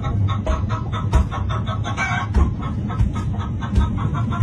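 Fufu being pounded in a mortar with a long wooden pestle: heavy dull thuds about once a second, with a quick run of short, wet clucking sounds between them.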